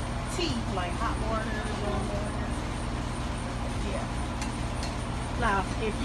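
Women talking quietly, with a louder stretch of speech near the end, over a steady low hum.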